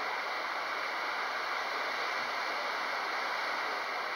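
Steady, even background hiss with a faint constant high whine and no other events, heard in a pause between spoken sentences.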